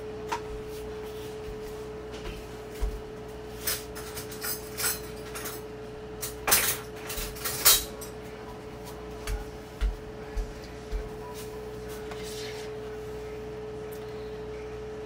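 Scattered knocks and clinks of a spoon and plastic and glass kitchen containers being handled, loudest about halfway through, over a steady hum.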